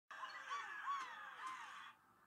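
A cartoon character's high-pitched, squeaky whining, about four short rising-and-falling cries over a steady hiss, ending abruptly near the end. It is heard through a TV speaker.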